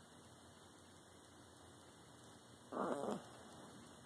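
A small long-haired dog lying down gives one short groan about three seconds in, lasting about half a second, over a faint steady hum.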